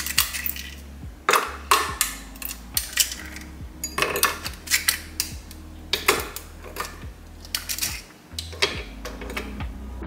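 Ice cubes dropped one after another into a glass of cold matcha, clinking and knocking against the glass at irregular intervals.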